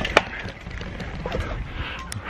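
Knocks and rustling from a handheld camera being moved about on a moving bicycle, with a sharp click shortly after the start, over a steady noise of wind and tyres on the road.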